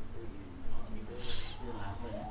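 A person talking quietly in a voice-over, over a steady low hum, with a short hiss about halfway through.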